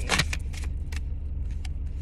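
Tarot cards being handled and drawn from the deck: a handful of short, sharp clicks and snaps of card stock, over a steady low hum inside a car.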